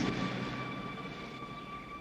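A car pulling away, its engine and road noise fading out. String music begins to come in near the end.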